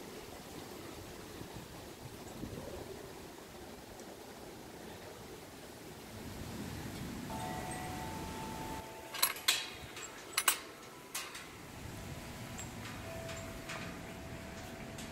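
Metal chimes ringing in steady tones, with several sharp clinks a little past the middle, over a faint outdoor background.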